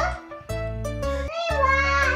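A young girl singing over a music backing track; her high voice slides up and then down in pitch partway through.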